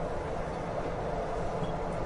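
Steady road and engine noise of a vehicle cruising at highway speed, an even rumble at a constant level.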